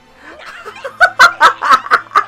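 A man laughing hard in a quick run of loud, short bursts, about five a second, starting about a second in.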